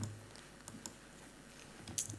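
A quiet pause in a room, with a few faint, scattered clicks and taps and a brief low vocal sound at the very start.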